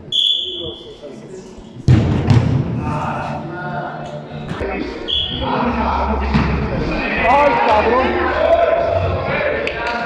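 A soccer ball struck hard on an indoor pitch, the loudest sound, about two seconds in, with short high whistle blasts at the start and again about five seconds in, and players shouting and chattering throughout.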